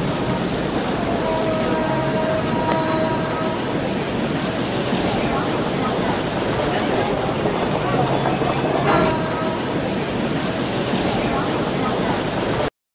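Steady, dense city street noise of traffic and crowd voices, with a few faint brief horn-like tones. It cuts off suddenly just after the end.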